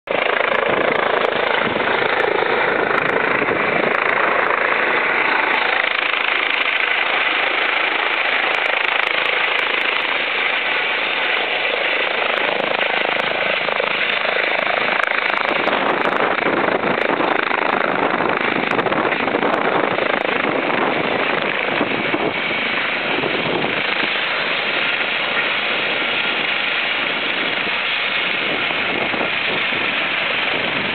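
Air-ambulance helicopter running on the ground with its rotor turning, a loud, steady noise of turbine and rotor that eases slightly about two-thirds of the way through.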